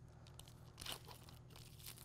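Faint crinkling and tearing of a swab's clear plastic wrapper being peeled open, strongest about a second in.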